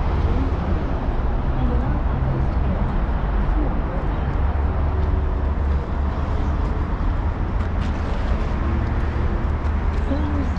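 Steady road traffic noise with a constant low rumble from passing cars and buses.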